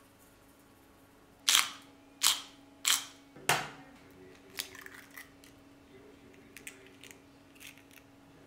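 A hen's egg knocked four times against the rim of an enamel bowl to crack it, sharp clacks about two-thirds of a second apart, followed by a few softer clicks as the shell is pulled open.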